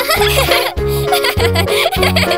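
Children's cartoon background music with a bouncy bass line, with the cartoon kittens giggling over it.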